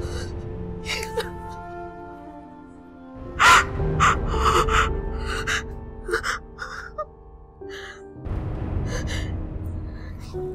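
A woman sobbing and gasping in a string of short, broken cries over slow background music with sustained notes. The loudest sob comes about three and a half seconds in.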